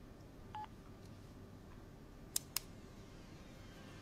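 A single short telephone keypad beep about half a second in, then two sharp clicks about a fifth of a second apart, over faint room tone.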